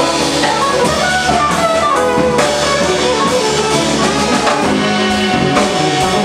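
Live jazz band playing: a saxophone melody over a drum kit with cymbals, electric bass and guitar.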